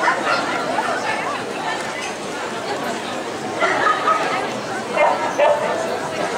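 Crowd chatter in a dog-show hall with dogs barking and yipping, the loudest barks coming about three and a half and five seconds in.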